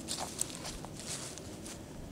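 Faint footsteps on grass: soft, irregular crunches and rustles, one a little sharper about half a second in.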